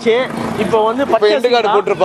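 A man speaking.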